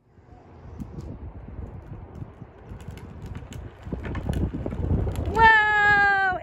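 Low rumbling noise that grows louder over a few seconds, then a high voice calls out in a held, slightly falling tone about five seconds in.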